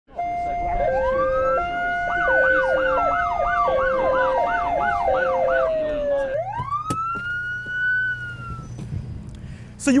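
Police siren running several tones at once: a two-tone hi-lo stepping back and forth, a long wail rising and slowly falling, and a fast yelp of about two to three sweeps a second. About six seconds in, a single wail rises again and then fades out.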